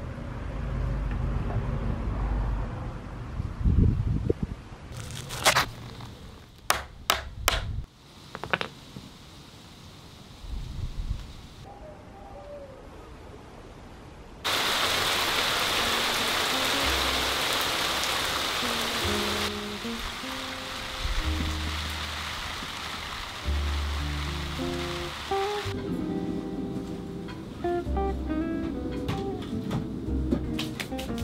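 Wooden pallet boards being handled on brick paving, with a run of sharp knocks about five to eight seconds in. Halfway through, heavy rain hisses for about five seconds, starting and stopping suddenly. In the last third, plucked guitar music.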